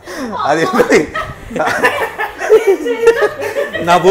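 People laughing and chuckling, mixed with talk.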